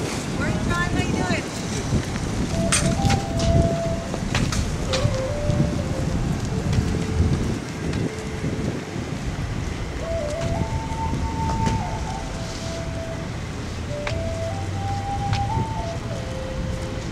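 Wind buffeting the microphone as a low rumble, with a faint tune of held notes stepping up and down and a few sharp clicks.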